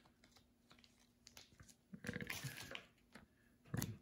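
Faint clicks and rustling of trading cards and thin plastic penny sleeves being handled, a little louder about two seconds in and again near the end.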